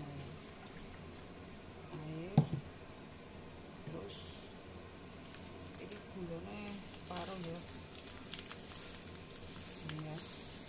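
Faint talking in a small room, with one sharp knock about two and a half seconds in, like a hard object set down on a counter.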